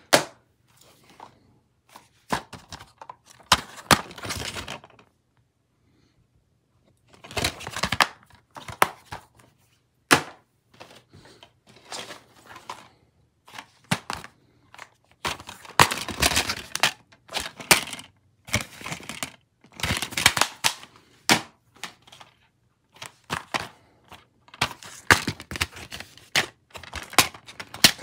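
Plastic DVD cases being handled: irregular clacks and knocks as cases are picked up, set down on one another and snapped open and shut, with a pause of about two seconds early in the run.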